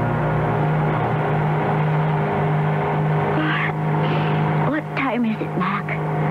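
Steady drone of a propeller airliner's engines, a radio-drama sound effect, under the tail of a music cue at the start. Voices come in over the drone in the second half.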